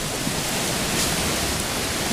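Steady, even hiss of outdoor background noise, with no other distinct event.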